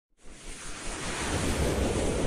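Intro sound effect: a wind-like whoosh swelling up from silence and growing steadily louder, with a low rumble beneath.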